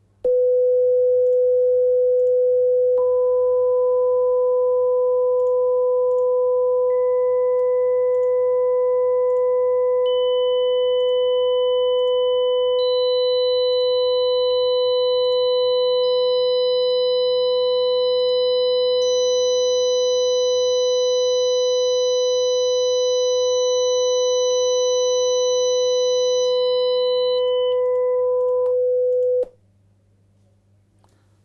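Pure sine-wave test tones at 500 Hz, 1 kHz, 2 kHz, 3 kHz, 4 kHz, 5 kHz and 6 kHz, layered one at a time. The 500 Hz tone starts the stack, and a higher tone joins every three seconds or so until all seven sound together as a steady chord. Near the end they drop out quickly one after another, highest first, the 500 Hz tone last.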